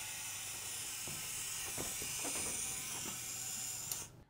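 Horizon 202 swing-lens panoramic camera's lens drum swinging across the frame during a slow exposure at 1/8 s: a steady, even hissing whir lasting about four seconds.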